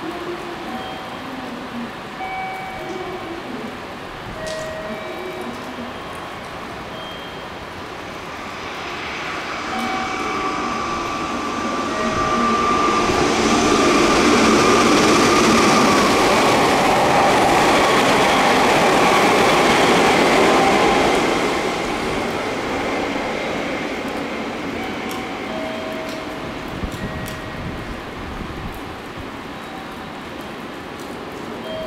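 Meitetsu 2200 series electric limited express running through a station at high speed on rain-soaked track. It builds, passes loudest in the middle and fades away, with a traction-motor whine that drops in pitch as it goes by. One motor car, No. 2204, roars like a 3100 series motor; the uploader cannot tell whether its motor is badly worn or has been swapped for a 3100 series one.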